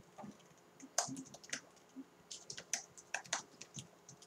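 Typing on a computer keyboard: an irregular run of about a dozen separate key clicks.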